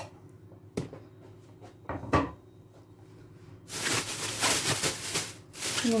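A few light knocks and clicks, then from about two-thirds of the way in a thin plastic freezer bag full of chopped peppers crinkles loudly as it is gathered and squeezed to press the air out.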